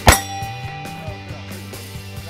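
A single loud handgun shot about a tenth of a second in, sharp and with a short ringing tail.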